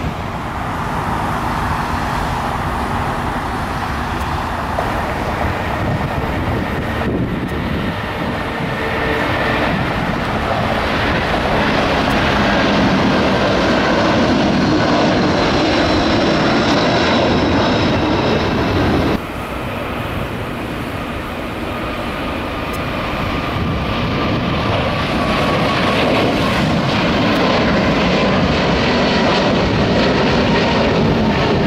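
Jet airliner engines in three clips cut together. First a twin-engine Boeing 777 taxiing. About seven seconds in, the sound switches abruptly to a four-engine Boeing 747 climbing out at takeoff power, loud, with high engine whines over the rumble. A second abrupt switch comes near two-thirds of the way through, to a twin-engine Boeing 777 climbing out.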